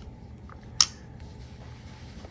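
Quiet handling of a Buck 110 folding knife as it is wiped with a cloth: faint rubbing and small ticks, with one sharp click a little under a second in.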